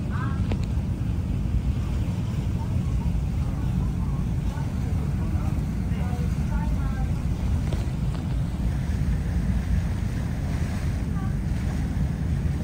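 Steady low rumble of a passenger boat under way on a lake, heard from the open deck with wind buffeting the microphone. Faint voices come and go in the background.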